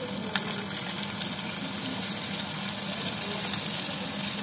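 Flour-dredged anchovies sizzling in hot oil in a frying pan as more fish are laid in: a steady hiss, with a few sharp pops near the start.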